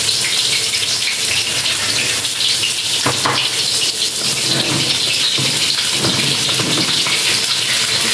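Hot oil sizzling steadily in a pan as tofu pieces fry, with a short knock about three seconds in.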